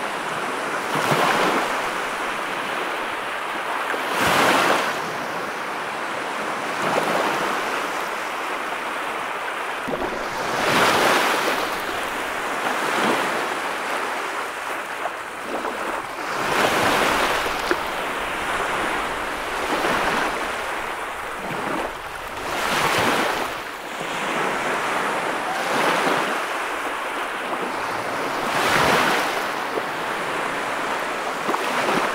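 Ocean surf breaking and washing up a sand beach: a continuous rush of white water, swelling into a louder surge every few seconds as each wave breaks.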